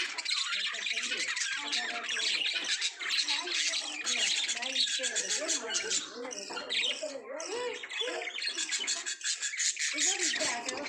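Budgerigars chattering and warbling together: a continuous run of quick chirps and squawks over wavering, bending calls.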